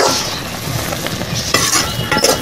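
A slotted spatula stirring thick, bubbling squid gravy in a blackened kadai: two scraping strokes, one at the start and one near the end, over the gravy's steady sizzle.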